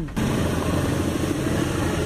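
Diesel locomotive hauling a coal train past a level crossing: the engine running with the steady noise of wheels on rail. It starts abruptly just after the beginning and cuts off at the end.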